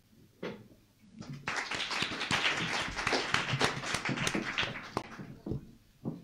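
A single tap, then a short round of audience applause: clapping starts about a second in, holds for a few seconds and dies away about five seconds in.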